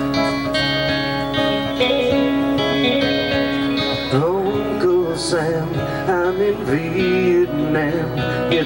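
Live band playing the opening of a song on strummed guitars, and a voice begins singing about halfway through.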